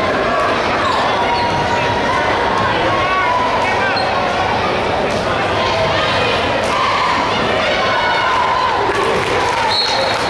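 Basketball bounced on a hardwood gym floor at the free-throw line, over steady chatter and raised voices from the crowd in a large, echoing gym.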